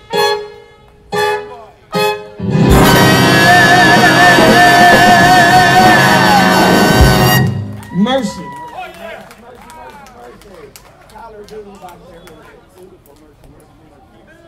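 Brass jazz band with trumpets and trombone ending a tune: three short ensemble stabs, then a held final chord with trumpet vibrato for about four and a half seconds, cut off sharply. Voices from the audience call out after the cutoff and fade into faint crowd chatter.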